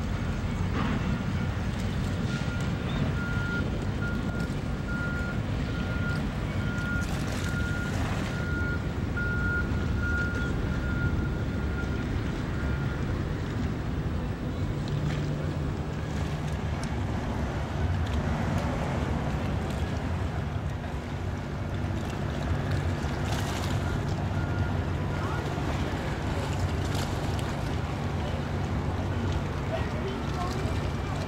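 Wind buffeting a camcorder microphone, a steady low rumble. A faint pulsing high tone runs through the first half, and a low hum joins in the second half.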